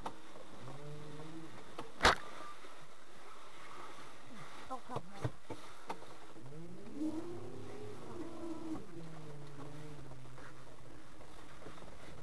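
Cabin noise of a small Hungarian Puli electric microcar driving over icy snow: a steady running sound with a sharp click about two seconds in, a few light knocks a little later, and a tone that rises and then falls in pitch between about six and nine seconds.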